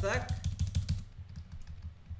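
Computer keyboard keys pressed in a quick run, mostly the Enter key adding blank lines. The strokes thin out after about a second and a half.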